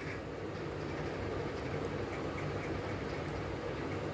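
A steady background hum with a low drone, even throughout, and no distinct events.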